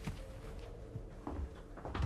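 Faint room noise of people moving about in a small room, with a couple of soft short knocks or shuffles in the second half.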